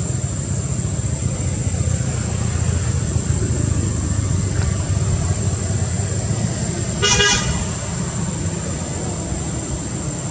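Steady low road-traffic rumble, with one short vehicle horn toot about seven seconds in.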